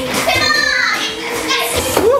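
Children's voices chattering and calling out in a large hall, one voice sliding down in pitch about half a second in, with dance music in the background.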